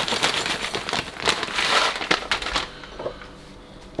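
Rolled oats poured from a plastic bag into a glass mug: a dense crackle of dry flakes and crinkling bag that stops about two and a half seconds in.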